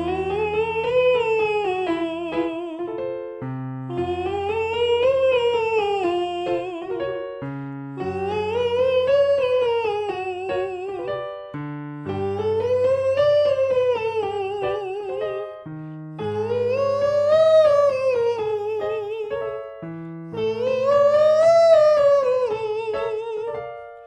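Man singing in falsetto through a scale exercise that arches up and back down, over held accompaniment chords. The pattern repeats six times, each a little higher than the last, working up towards the top of a male falsetto range.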